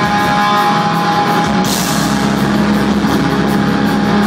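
Hardcore punk band playing live through a club PA: distorted electric guitars, bass and drums, with no vocals. The low end thins out briefly, then a sudden bright crash a little under two seconds in brings the full band back in.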